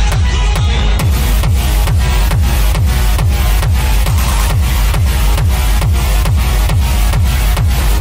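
Acid techno playing loud in a DJ mix: a driving four-on-the-floor kick drum under a dense electronic layer. A bright hissing top layer joins about a second in.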